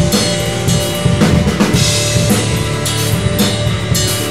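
A rock band playing live with a drum kit, electric guitar and electric bass: a heavy instrumental passage of progressive rock with steady low bass notes, cymbals and drum hits throughout, and no vocals.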